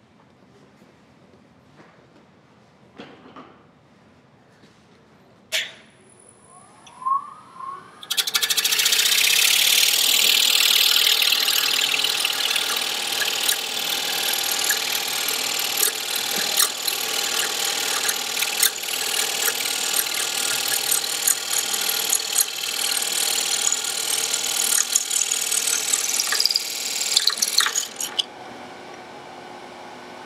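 A wood lathe spins up with a short rising whine about seven seconds in. A turning tool then cuts into the spinning inlaid wooden jar lid for about twenty seconds, a loud, steady, scraping cut taken slowly so as not to go through the walnut layer. The cut stops abruptly near the end, leaving the lathe running quietly.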